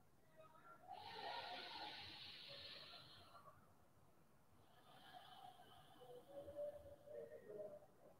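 Faint, slow breathing through the nose: one long breath starting about a second in, then a softer one from about halfway.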